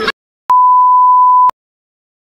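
A single steady electronic beep, about a second long, of the stock bleep sound-effect kind.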